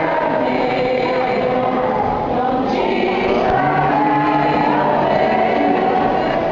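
Choir of many voices singing a slow sacred hymn, holding long notes.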